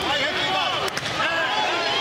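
Ringside commentary voice over the fight, with one sharp thump a little under a second in: a boxing punch landing.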